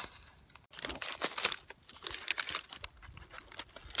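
Crinkling and crackling of the foil wrapper of a freeze-dried ice-cream sandwich being handled, in quick clusters of sharp crackles about a second in and again a little past two seconds.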